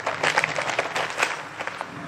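Clear plastic packaging bag crinkling as it is handled, a dense run of irregular crackles that thins out in the second half.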